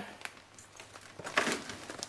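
Plastic compost bag crinkling as it is handled and moved, with a brief louder rustle about one and a half seconds in.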